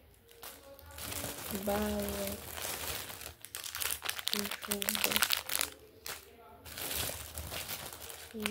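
Clear plastic cellophane bag crinkling as hands rummage through it and handle a candy wrapper, the crinkling thickest around the middle. A few short hummed voice sounds come in between.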